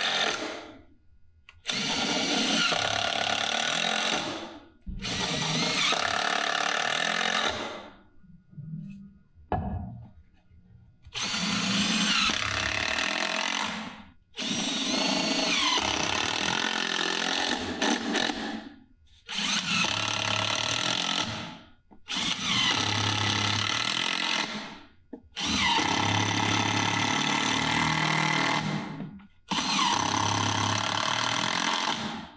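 Cordless drill-driver sinking wood screws one after another through 3/4" plywood cleats into 2x4 platform legs. There are about nine runs of motor whine, each two to four seconds long, rising in pitch and stopping abruptly as a screw seats. Near the middle comes a longer pause with a few small clicks.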